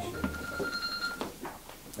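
A steady high-pitched electronic tone, like a phone ringing, sounds for about a second and then stops.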